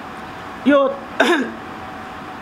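A woman clearing her throat twice, two short sounds about half a second apart.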